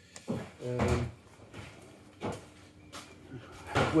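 A few short knocks and clatters as a handheld camera is moved and set up for a close shot, with a brief wordless voiced sound from a man about a second in.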